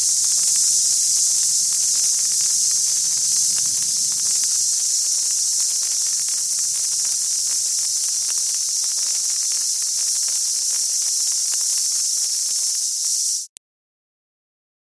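Cartoon burning-fuse sound effect: a steady, high-pitched hiss with fine crackling throughout, which cuts off suddenly near the end.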